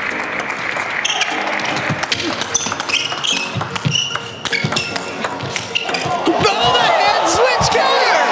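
Table tennis rally: the celluloid ball clicks sharply off rackets and table in a quick exchange. A crowd then starts cheering and shouting about six seconds in as the point is won.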